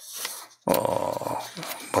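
A man's drawn-out hesitation "uh" of just under a second, held at an even pitch, as he searches for his next words.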